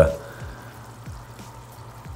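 Faint steady fizzing of air bubbles rising from air-driven sponge filters in an aquarium.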